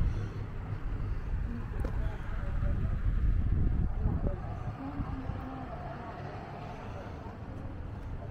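Low, steady outdoor background rumble, swelling a few seconds in and easing off toward the end.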